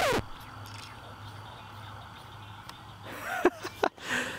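Background music ends at the very start, then outdoor evening ambience on a rural roadside: a low steady hum under a faint even hiss. A few short sounds with wavering pitch come near the end, perhaps voices or an animal.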